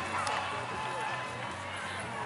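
Background chatter of voices over a low steady hum, with no single sound standing out.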